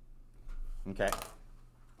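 Speech only: a man saying "OK" about a second in, over a faint steady low hum.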